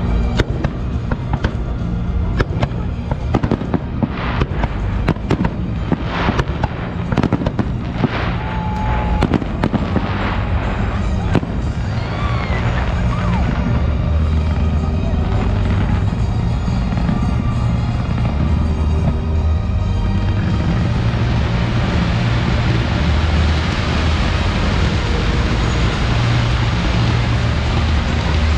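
Fireworks going off in a rapid run of sharp bangs and crackles for the first ten seconds or so. After that they give way to a steady noisy din that swells near the end, with music's bass notes running underneath throughout.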